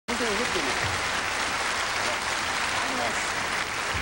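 Audience applauding steadily, with a voice faintly heard over it near the start and again around the middle.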